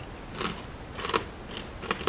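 Crunchy pork rinds being chewed: a few crisp crunches about half a second apart.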